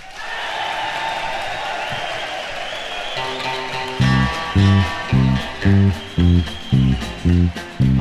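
Crowd noise and a twangy electric guitar intro, then from about four seconds in a four-string electric bass joins on the beat with a bouncing root-and-fifth country line, about two notes a second at 111 bpm.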